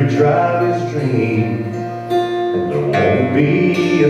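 Acoustic guitar strummed steadily while a man sings a country ballad into a microphone, holding some notes long.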